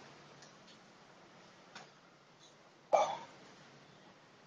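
Close-range Wing Chun sparring: a few faint taps and scuffs of arm contact and footwork, then one loud, sharp, short sound about three seconds in, from a strike landing or a grunted exhale.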